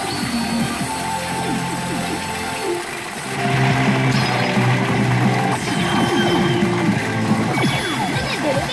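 Music and electronic sound effects from a P Fever Powerful 2024 pachinko machine, getting louder about three seconds in.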